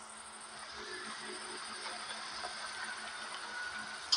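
A car driving slowly through a gas-station forecourt, its engine and tyres a low steady noise with a faint hum that slowly grows louder.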